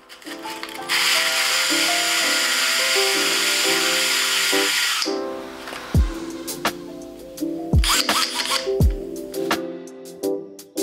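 Hikoki cordless drill spinning plywood knobs against sandpaper held in the hand, a loud rushing whirr that starts about a second in and dies away about four seconds later, over background music. The music continues alone afterwards, with three deep falling beats.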